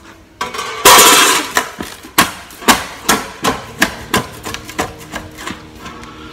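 A steel sheet-metal panel on the floor being stamped and jumped on to bend it into a curve. There is a loud metallic bang about a second in, then a run of sharp clanks about two a second, each ringing briefly.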